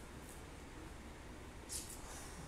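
Faint room tone with a steady low hum, and one brief soft high-pitched noise near the end.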